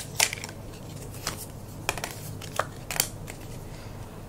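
A deck of tarot cards being shuffled and dealt onto a cloth-covered table: about five separate crisp card snaps and taps, spaced irregularly, over a steady low hum.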